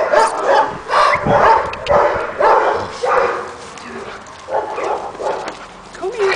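Staffordshire Bull Terrier giving short barks and yips, about two a second at first, thinning out after about three seconds.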